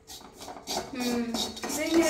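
A wooden spatula scrapes and knocks against an aluminium kadai while stirring fried meat, making short clicks. A voice speaks over it twice, starting about two-thirds of a second in and again near the end.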